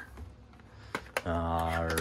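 Two light clicks about a second in, from a small cardboard box being handled, then a man's voice begins a long, drawn-out word near the end.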